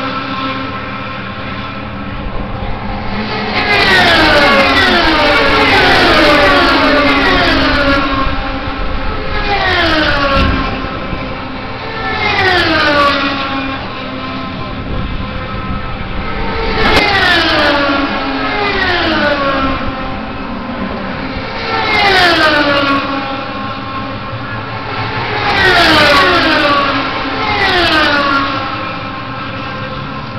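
IndyCar race cars' Honda 3.5-litre V8 engines passing at speed one after another, every few seconds, each a high engine whine that drops sharply in pitch as the car goes by.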